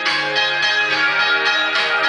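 Blues music from a live concert recording playing through the speaker of a 1936 Philco 37-640X tube radio console, with a run of sharply picked, ringing single notes and no singing.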